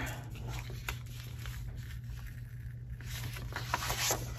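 A large Mambi sticker being peeled up off planner paper: faint paper rustling and scratching with a few small ticks, over a low steady hum. The peel is tough: the sticker grips the paper and wrinkles it as it comes up.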